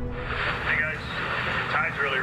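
Marine radio hiss that switches on at the start, with a voice coming through thinly over the radio. Under it runs a steady low engine rumble.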